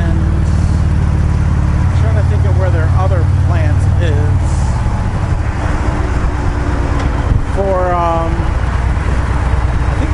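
Harley-Davidson touring motorcycle's V-twin engine running at highway speed under steady wind noise, its low drone dropping about halfway through. A man talks over it in places.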